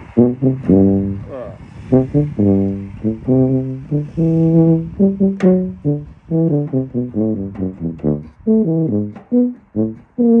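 E-flat tuba playing a lively passage of short, detached notes that move up and down in pitch, with a few longer held notes in among them.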